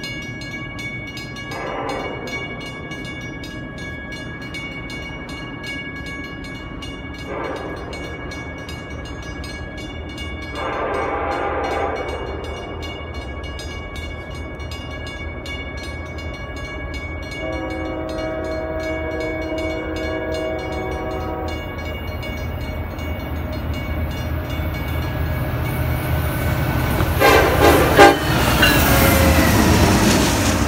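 Approaching freight train's diesel locomotive sounding its chord horn: three short blasts, then one long blast of about four seconds, over a low rumble that grows steadily louder. Near the end the locomotive passes close by with a loud burst of sound.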